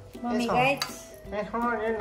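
A singing voice with light clinks of kitchenware, a few short taps of metal.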